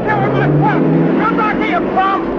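Men shouting over the steady drone of a pickup truck's engine as the truck drives away.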